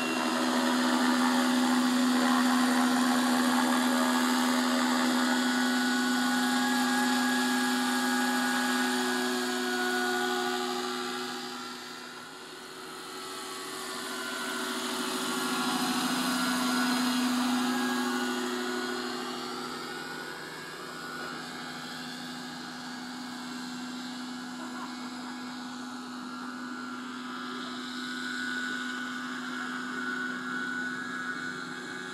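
Radio-controlled scale model helicopter flying: a steady whine from its motor and main rotor. Around the middle it passes close, with the pitch sweeping and the sound loudest, then it carries on more faintly.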